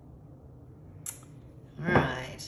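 A small click about halfway through, then a louder knock with a brief ring near the end as a stretched canvas is set down flat on the table.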